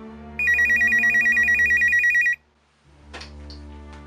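Telephone ringing: one loud warbling ring about two seconds long starts about half a second in and stops abruptly, part of a ring pattern that was already going. Soft music plays underneath, and a couple of sharp clicks follow near the end.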